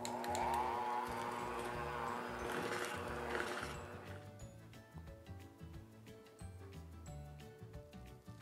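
Electric hand mixer running in sugar cookie dough, its motor whine wavering in pitch, cutting off sharply a little under four seconds in. Soft background music follows.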